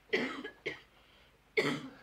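A man coughing three short times, with quiet gaps in between.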